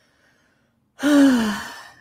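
A woman's single breathy sigh about a second in, falling in pitch as it fades, after a second of silence.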